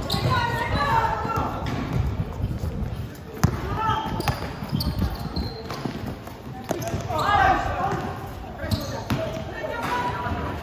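Basketball bouncing repeatedly on a hard court as players dribble, with players' voices shouting out near the start, around four seconds in and again around seven to eight seconds in.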